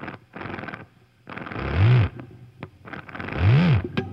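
Electric drill revved twice, about a second and a half in and again near the end, its motor whine rising and falling in pitch each time, with shorter scraping noisy bursts in between.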